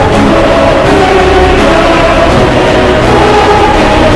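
Loud soundtrack music with a choir singing long held notes.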